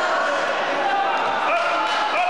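Several people shouting over one another in an echoing sports hall, with a thud or two in the second half as a fighter is taken down onto the wrestling mat.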